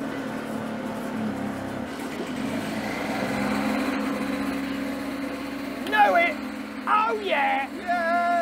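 Mobylette moped's small single-cylinder two-stroke engine running steadily, just fired up after many pedal-start attempts; it grows a little louder midway, then eases. Brief shouts from a man's voice come near the end.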